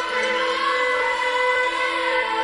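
A choir of voices holding sustained chords, with no drums, in the intro of a pop song. The notes are long and steady, without any beat.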